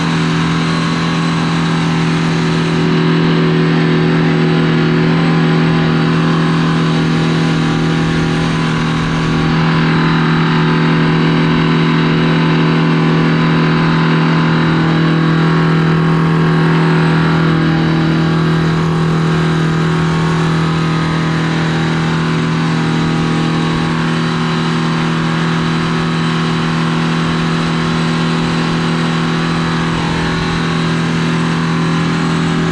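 Oliver 1950 tractor's Detroit Diesel two-stroke engine running steadily at working speed, a loud, even drone that swells a little twice along the way.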